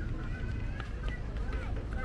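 Outdoor market ambience: several passersby talking nearby over a steady low rumble, with a few light clicks from footsteps.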